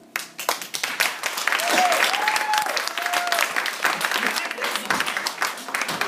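Audience applauding as a song's final keyboard chord ends, with one voice calling out briefly about two seconds in.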